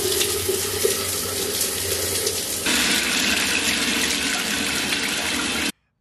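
Shower head spraying water against a tiled wall, a steady hiss that grows brighter about halfway through and cuts off suddenly just before the end.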